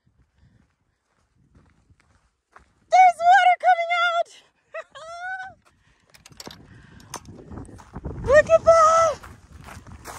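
A woman's excited wordless whoops and squeals, starting about three seconds in and coming again near the end, with footsteps and handling noise as she walks.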